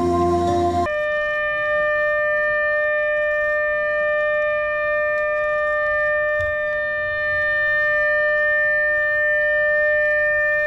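A single steady siren tone, held at one pitch, sounding for a moment of silent tribute. It starts abruptly about a second in, right after choral singing.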